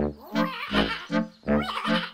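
A cartoon frog laughing in two bursts, over bouncy music with a steady beat of about two and a half pulses a second.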